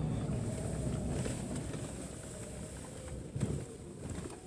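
A car driving slowly, heard from inside: a steady low road and engine rumble that fades gradually as the car slows, with a single brief thump about three and a half seconds in.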